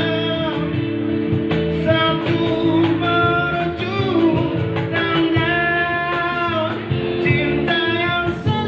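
A man sings into a microphone, his voice amplified, over live guitar and cajon accompaniment.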